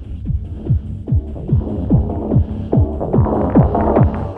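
Instrumental intro of a techno track: a steady electronic kick-drum beat, each hit dropping in pitch, about two and a half beats a second over a low hum, with more synth layers coming in during the second half.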